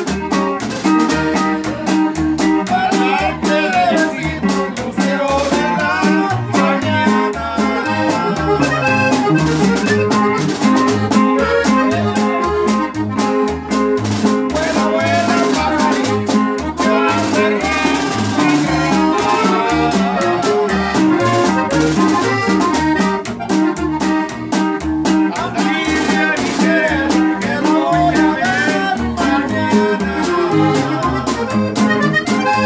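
Norteño band playing live: a button accordion carries the melody over a plucked tololoche (upright bass), guitar, and snare drum with cymbal. Steady beat throughout.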